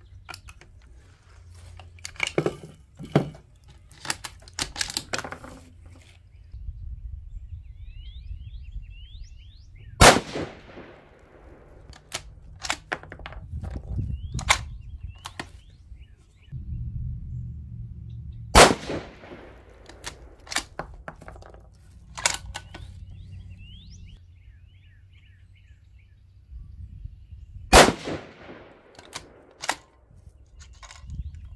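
Three rifle shots from a 6mm ARC Savage 110 bolt-action rifle, about eight to nine seconds apart, each sharp crack trailing off in a ringing echo. Between the shots come the clicks and clacks of the bolt being worked.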